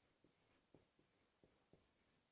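Dry-erase marker writing on a whiteboard: a series of faint short squeaks and taps as the letters are drawn.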